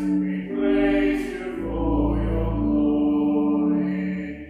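A small church congregation singing a hymn with organ accompaniment: long held notes that change about every second, over a sustained low organ bass.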